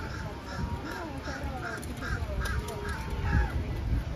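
Birds calling: a rapid run of short, crow-like calls, about three a second, that stops a little before the end, with other gliding bird whistles beneath, over the low rumble of people walking.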